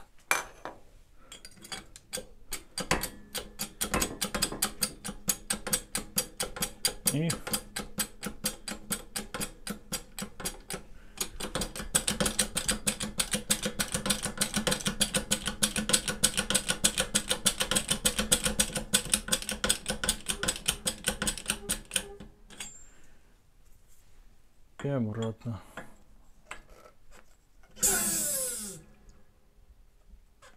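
Rapid, steady metallic clicking, about four to five clicks a second for some twenty seconds, from a hydraulic bottle-jack press being worked with its handle. A short burst of hiss comes near the end.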